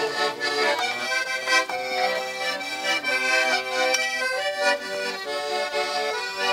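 Accordion playing a traditional tune: held chords under a melody that moves in short steps.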